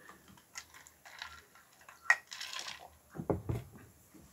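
A person taking a drink: small handling clicks, a short sip about two seconds in, and swallowing a little past three seconds.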